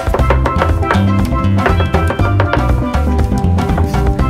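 Upbeat music with a drum kit, percussion and a repeating bass line keeping a steady dance rhythm.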